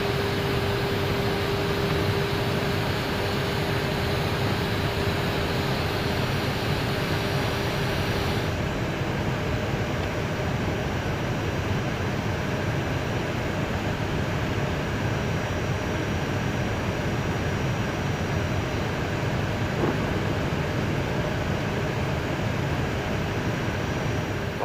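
Steady flight-deck noise of an Airbus A319 in descent: the even rush of air and air-conditioning around the cockpit. A steady mid-pitched hum runs under it and stops about eight seconds in, along with the highest part of the hiss.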